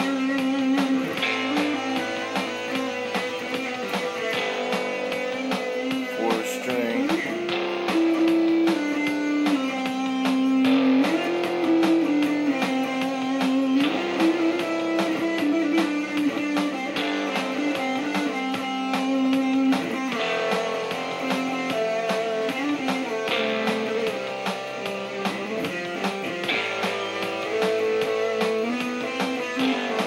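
Electric guitar playing an improvised single-string lead in C major, moving along one string with held notes and slides between them, over a backing track of chord changes. The line has a somewhat sitar-like, exotic sound.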